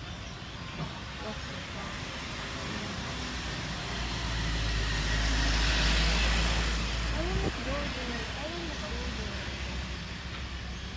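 Box truck driving past close by. Its engine and tyre noise build to a peak about six seconds in, then fade as it moves away.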